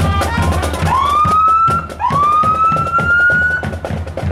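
Marching band drumline playing a steady cadence on snares and bass drums, with two rising siren wails from a fire truck, the first about a second in and the second about two seconds in and held until near the end.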